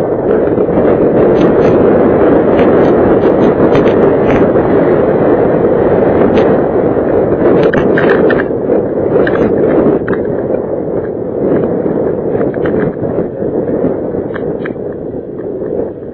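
Loud wind noise and motorcycle running noise on an action camera's microphone while riding, with scattered clicks. It eases after about ten seconds and falls away near the end as the bike slows.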